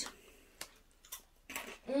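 Mostly quiet, with a few faint crunches from chewing a baked cheese breadstick, then a hummed 'mm' near the end.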